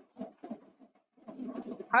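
A person's voice coming quietly and haltingly over a video-call line, in short broken fragments, before picking up into a spoken question right at the end.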